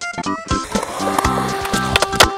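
Skateboard wheels rolling on concrete, then a sharp crack of the board popping off the ground for a trick near the end, all under background music with a bass line.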